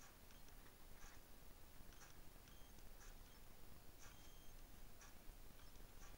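Near silence: room tone, with faint ticks about once a second.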